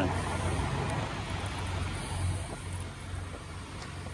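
Steady low rumble of idling semi-truck engines and traffic across a truck-stop lot, swelling and fading gently with no single vehicle standing out.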